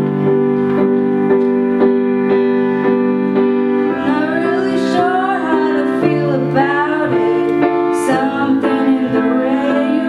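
Grand piano playing steady repeated chords as accompaniment to a female solo singer, whose melody stands out more clearly from about four seconds in.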